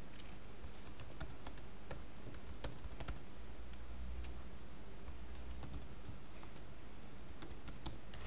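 Typing on a computer keyboard: scattered light key clicks in two runs, one in the first few seconds and another in the second half, over a low steady hum.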